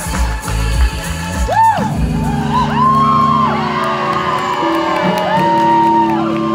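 Indie rock band playing live through a PA, with guitars and keyboard, and whoops over the music. About two seconds in, the pounding bass and drums drop out, leaving held chords.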